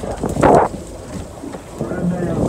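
Wind buffeting the microphone over a low, steady rumble aboard a boat, with a short breathy laugh about half a second in.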